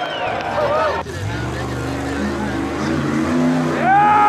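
Rock-bouncer buggy's engine revving in uneven bursts as it climbs, its pitch stepping up and down. Spectators yell in the first second, and a loud crowd whoop rises near the end.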